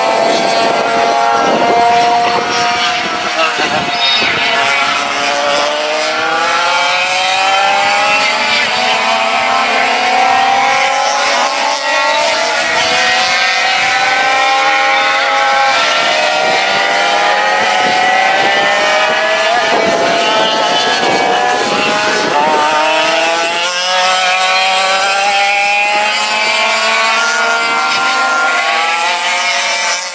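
Several classic 100cc two-stroke kart engines racing together, a high-pitched buzz from overlapping engines that rises and falls in pitch as the karts accelerate and ease off through the corners.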